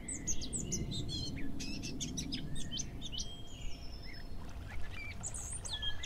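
Small birds chirping and calling, many short high calls overlapping throughout, over a steady low outdoor rumble.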